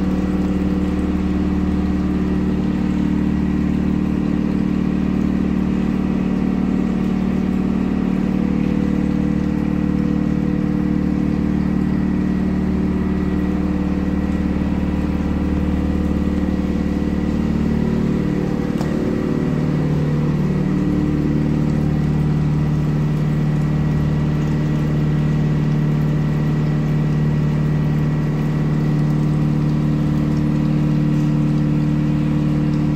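Steady, loud hum of motor-driven sewage treatment plant machinery running. The hum wavers about eighteen seconds in and settles into a slightly lower note.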